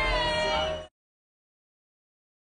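A drawn-out, high-pitched yell from one voice, cut off abruptly under a second in, then dead silence.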